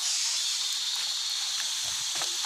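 Steady high-pitched chorus of insects in tropical rainforest, an even unbroken drone.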